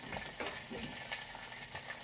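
Onion and red chili sizzling in a little oil in a cooking pot: a steady frying hiss with a few faint clicks.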